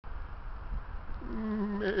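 Sheep bleating: one long call that starts about a second in, holds level at first, then turns into a rapid wavering tremble near the end.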